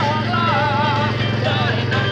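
Quad bike (ATV) engine running steadily at low speed as it passes close by, a low drone with a fast even pulse. Music with a wavering singing voice plays over it.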